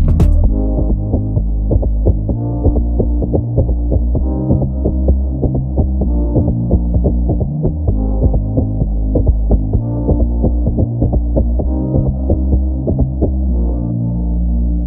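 Instrumental jersey club beat playing, with its highs filtered away just after it begins, leaving a muffled, bass-heavy groove of sustained low synth notes and regular drum hits.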